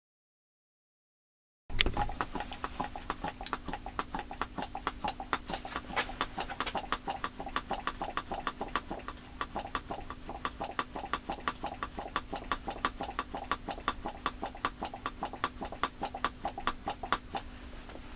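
Hand-squeezed brake bleeder vacuum pump worked over and over, a quick, even run of clicks about four a second, drawing a vacuum on a jar of oil with wood in it. It starts suddenly after a second and a half of silence, and the clicking stops just before the end, leaving a low hum.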